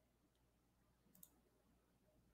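Near silence, with one brief cluster of faint computer clicks a little over a second in.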